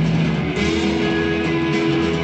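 Psychedelic rock band playing live: sustained electric guitar notes over a drum kit, the held notes shifting to a new pitch about half a second in.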